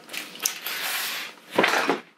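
Handling and rustling noise from a person moving in a spandex dress, then a louder creak and bump near the end as a leg is lifted onto an office chair.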